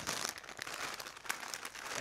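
Plastic bag of fresh spinach crinkling softly and irregularly as it is handled and tipped over a pot.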